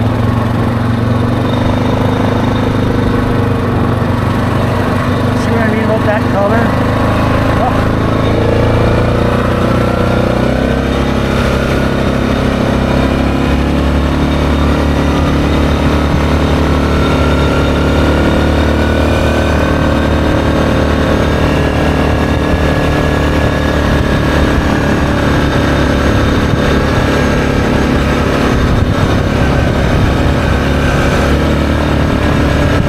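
Yamaha Grizzly ATV engine running steadily under way on a paved road. Its note changes about ten seconds in and then rises slowly as the ATV gathers speed.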